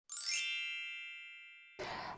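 Logo sting chime: one bright, bell-like ding with a quick upward shimmer at its start, ringing and fading away over about a second and a half.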